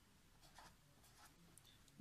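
Faint scratching of a pen writing on paper, a few short strokes.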